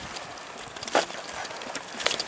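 Ragley Blue Pig mountain bike knocking and rattling against concrete steps: one sharp knock about a second in, with lighter clicks around it, as the front wheel is lifted onto the stairs.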